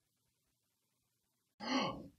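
Near silence after a spoken line, then near the end a short grunt from a person.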